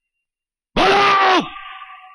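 A man's loud, wordless yell lasting about half a second, starting partway in, followed by a fading echo.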